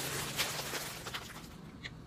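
Thin plastic parcel bags rustling and crinkling as they are handled and lifted, with a few sharper crackles, dying away about a second and a half in.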